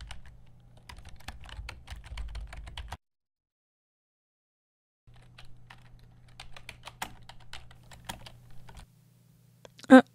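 Typing on a laptop keyboard: irregular key clicks over a low hum. The sound cuts out completely for about two seconds in the middle, then the typing resumes.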